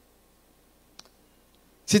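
A pause with near silence, broken by one short, faint click about halfway through; a man's voice starts speaking right at the end.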